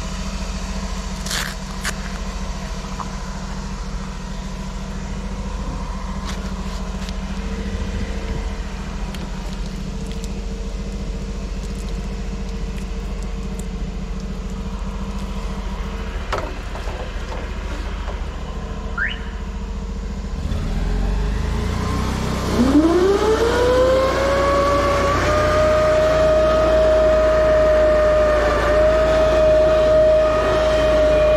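Engine-driven high-pressure drain jetter running with a steady low hum. About 21 seconds in it comes up to working pressure: the sound gets louder, and a whine rises in pitch and then holds steady.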